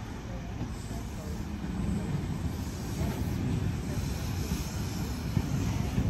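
Double-deck electric suburban train pulling into the station platform, its rumble growing steadily louder as it draws alongside.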